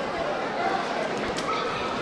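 Spectators in a school gymnasium during a basketball game: a steady murmur of crowd voices with scattered shouts, echoing in the hall.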